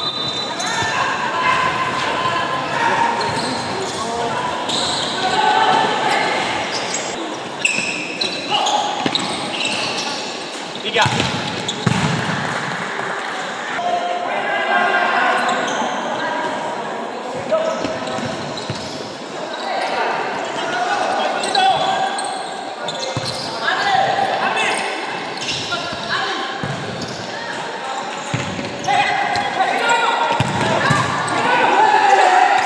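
Futsal being played in a large indoor hall: players shouting and calling to one another over repeated thuds of the ball being kicked and bouncing on the court, all echoing in the hall.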